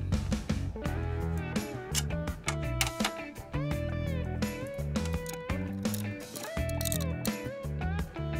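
Background music with a steady beat, a repeating bass line and held melody notes that slide up and down in pitch.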